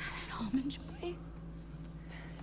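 Brief whispered dialogue from the TV episode's soundtrack, faint and over a low steady hum, mostly in the first second.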